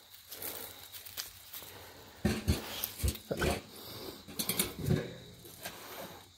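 St. Bernard puppy making several short vocal sounds, a handful of brief ones coming in its second half.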